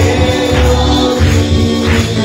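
Evangelical praise song played by a band with tambourine, with voices singing along over a steady beat.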